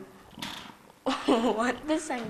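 A short soft breathy hiss, then a person talking from about halfway through.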